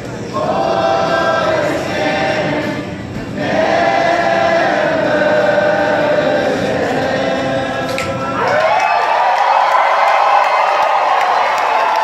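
Live rock band, several voices singing long held notes together over guitar. About eight and a half seconds in, the low end drops out and the voices slide up into one long held note.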